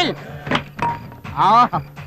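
Film soundtrack: a short vocal exclamation over background music, with a thump at the very start and another about half a second in.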